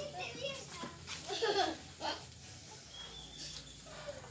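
Indistinct high-pitched voices, without clear words, in two short bursts in the first half, then quieter.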